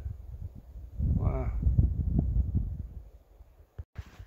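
A man's brief wordless voiced sound about a second in, over a low rumble of wind buffeting the microphone and short knocks of footsteps on a trail. The sound drops out suddenly near the end.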